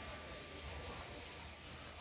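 Faint low rumble and rubbing noise from a handheld phone microphone being carried, with a thin steady high tone in the first half.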